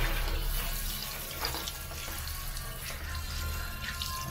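Running water splashing steadily onto a motorbike's alloy wheel and tyre as it is rinsed and rubbed by hand.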